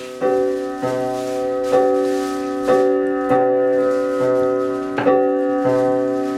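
Piano accompaniment playing an instrumental passage between sung lines: chords struck about once a second, each left to ring.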